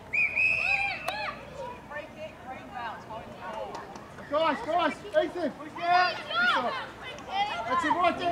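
Players and spectators shouting short, unclear calls across a football field, in several bursts, busiest after the halfway point. Near the start there is a brief high, steady tone.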